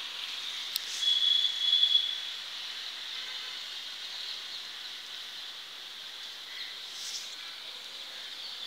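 Steady high-pitched insect chorus, with a louder single high buzz about a second in that lasts a little over a second. A short click comes just before it.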